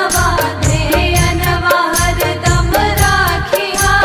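A woman singing a Bhojpuri devi geet, a Hindu devotional song to the Mother Goddess, over a steady beat with bass and percussion.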